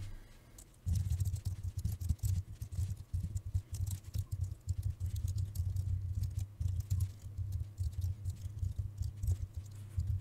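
Computer keyboard being typed on in quick, uneven runs of keystrokes, starting about a second in.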